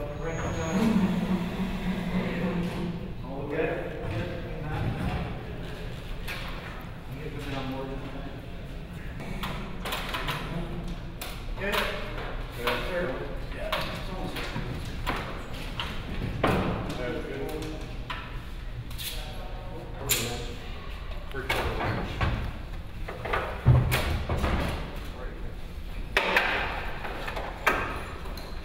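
A work crew's voices in a large, echoing hall while cast dinosaur skulls are handled onto a metal mounting rig, with scattered knocks, taps and clinks and one sharper knock near the end.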